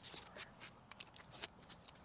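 Gloved hands pushing loose clay soil back into a planting hole around a small plant: a string of soft, irregular scrapes and crunches of soil.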